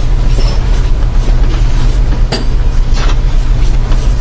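Steady low hum with a rushing hiss: the background noise of the talk's recording, heard in a gap between phrases. A faint click comes a little past the middle.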